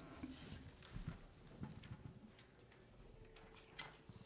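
Near silence: room tone with a few faint, irregular clicks and soft knocks, the sharpest click near the end.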